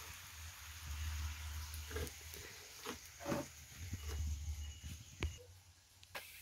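Pieces of meat frying in a skillet over an open wood fire, a faint steady sizzle under a low rumble, with a few brief louder sounds about two and three seconds in and a sharp click near the end.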